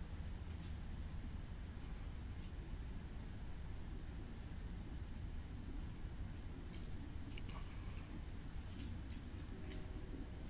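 Crickets trilling in one steady, unbroken high-pitched note, over a low background rumble.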